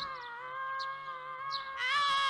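One long, high-pitched scream from the cartoon character Goku, held without a breath at a nearly steady pitch and rising a little near the end. It is a scream of agony, part of one drawn-out scream.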